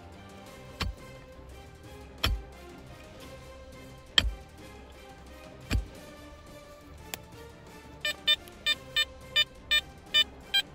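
A pick blade striking into dry, stony soil, five sharp blows about a second and a half apart. From about eight seconds in, a Garrett Ace Apex metal detector gives a quick run of short beeps, about three a second, as its coil is held over the hole, responding to a metal target.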